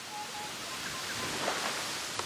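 Outdoor bush ambience: a steady hiss with a few faint, short bird chirps.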